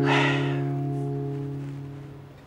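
Background music: a strummed acoustic guitar chord ringing on and slowly fading away.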